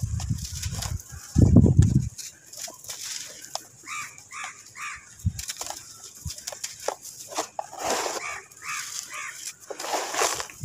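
Dry red sand cake crushed and crumbled by hand over a plastic tub, with gritty crunching, scattered crackling and loose sand falling. Two heavier low crunches come in the first two seconds. Chickens cluck in the background, in short repeated calls around the middle and near the end.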